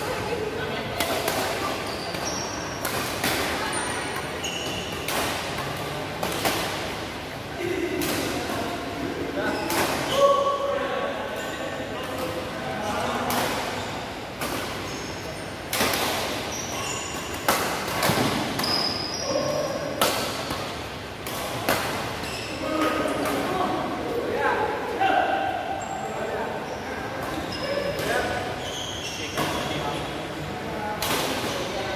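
Badminton rackets hitting a shuttlecock again and again in a doubles rally, with short high squeaks of shoes on the court floor between the hits. Voices carry in the hall.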